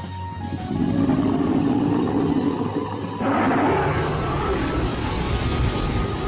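A dragon-roar sound effect over background music: a long growling roar starting about half a second in, then a second roar about three seconds in.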